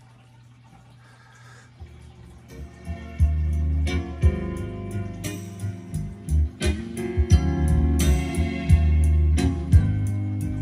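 Recorded music played over a vintage Sansui 210 receiver and Sansui S990 three-way speakers, heard in the room. A faint low hum comes first; the music fades in about two seconds in and is playing loud from about three seconds.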